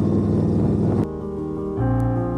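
Indian Scout Bobber's V-twin engine running with road and wind noise while riding, cut off suddenly about a second in. Piano background music takes over.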